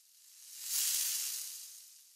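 Logo-reveal sound effect: a smoky hissing whoosh that swells to a peak just under a second in and then slowly fades away.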